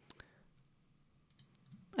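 Faint mouth clicks from a close-miked narrator pausing between sentences: two just after the start and a few more, fainter, about a second and a half in.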